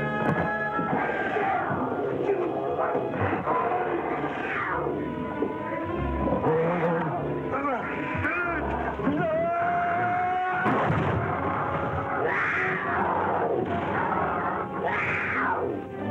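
Dramatic orchestral film score under a fight, with several loud wordless cries and shouts rising and falling over it.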